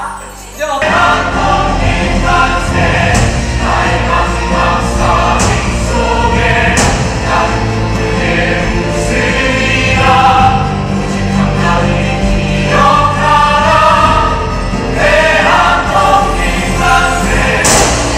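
Musical-theatre number with several voices singing together over a loud accompaniment with a steady bass. It starts after a brief dip in level just after the start.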